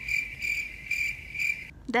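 A steady high-pitched tone pulsing a few times a second, starting abruptly and cutting off suddenly near the end.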